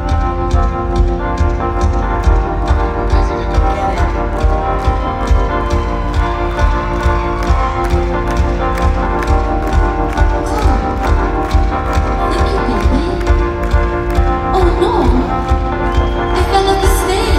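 Live full rock band playing in an arena: a steady drum beat over heavy bass, with keyboards and guitars holding sustained chords, and a voice gliding over it in the second half.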